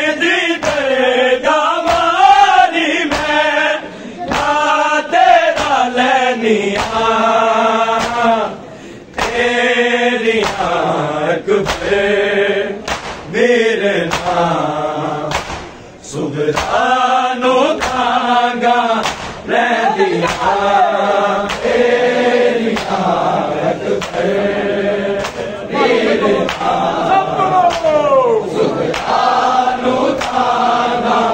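Men's voices chanting a noha, a mourning lament, in unison in phrases with short breaks between lines. Sharp rhythmic slaps of hands on bare chests (matam) mark the beat roughly once a second.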